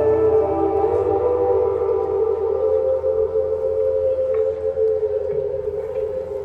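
A live rock band's slow instrumental intro: long held, wailing notes that slide slowly between pitches, with no drums or singing yet.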